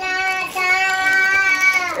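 A young child's voice holding one long sung note for nearly two seconds, dipping slightly in pitch at the end.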